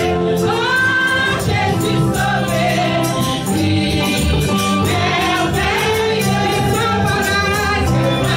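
A woman leading Haitian gospel praise singing through a microphone, with voices singing along. Under the voices there is instrumental backing with sustained low notes and a steady beat.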